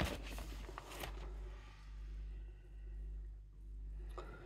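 Faint rustle of a vinyl LP sliding out of its inner sleeve during the first second, with a light scrape as it comes free, then only quiet room hum.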